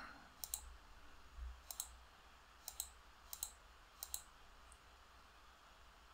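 Faint computer mouse clicks, about six spread irregularly a second or so apart, as fields and a date picker are clicked in the software.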